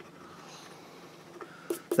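Faint scratching of a coin rubbing the coating off a scratch-off lottery ticket, stopping about a second and a half in.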